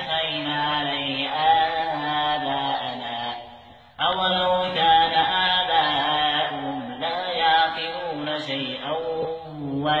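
A man reciting the Quran in a slow, melodic chant, drawing out long held notes. His voice fades away just before four seconds in, then he resumes with a new phrase.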